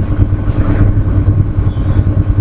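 Loud, steady low rumble with a faint constant hum above it, with no other distinct event.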